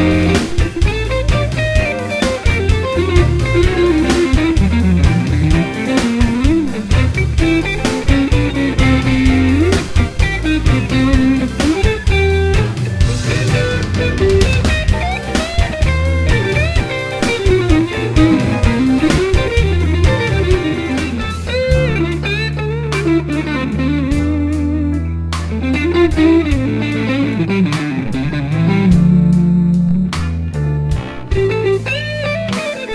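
A blues band backing track in a rhumba rhythm, with drums and bass guitar, and a Stratocaster-style electric guitar soloing over it with bent notes. Near the end the music changes to a minor-key blues.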